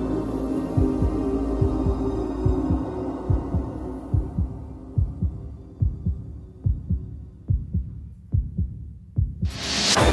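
Film soundtrack: a low, heartbeat-like double thump repeating about once a second, over a sustained low drone that fades out within the first few seconds. Near the end a loud burst of noise swells in.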